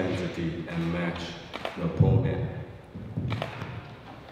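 A man speaking English into a handheld microphone for about the first second, then a loud low thump about two seconds in from the microphone being handled, followed by a few quieter knocks and bits of voice.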